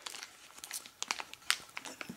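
Clear plastic bag crinkling as it is handled in the hand: a scatter of light, irregular crackles.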